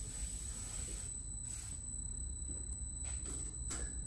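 Steady low hum with faint, thin high-pitched tones over it and a few soft clicks; no engine is running.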